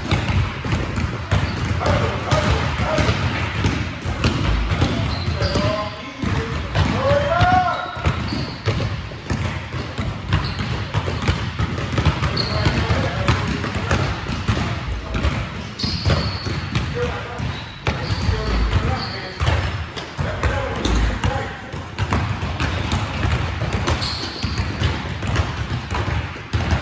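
Several basketballs bouncing irregularly on a gym floor as players dribble, the thuds overlapping throughout, with a few short high squeaks.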